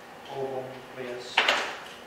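A man's voice saying a few words, then two sharp clacks in quick succession about one and a half seconds in, like a hard object knocked against a surface.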